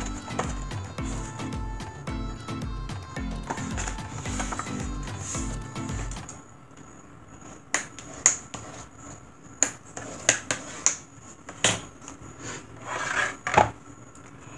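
Background music with a steady beat for about the first six seconds, then it stops. After that come scattered sharp crackles and scrapes of cardstock being folded in half and its fold pressed flat, with a longer sliding scrape of the card near the end.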